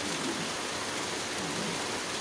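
Steady rain-like hiss from a ghost-story TV programme's soundtrack played back through speakers, with faint wavering low tones beneath it.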